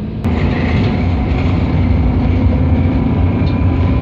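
Bus engine droning and road rumble heard from inside the moving bus, with air rushing in through open windows. The noise jumps louder with a click just after the start, then holds steady.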